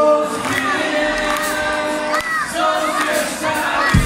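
Live rock band's male vocalists singing sustained lines with the audience singing along, the bass and drums dropped out so that mostly voices are heard.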